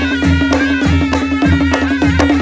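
Nepali panche baja band playing: shawm-type horns carrying the melody over a held low note, with a quick, even drum-and-cymbal beat of about four strokes a second.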